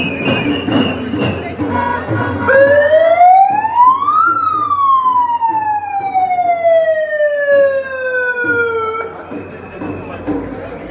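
A siren sounding one long wail over the noise of a marching crowd. It starts about two and a half seconds in, rises in pitch for about two seconds, then falls slowly for about five seconds and stops shortly before the end.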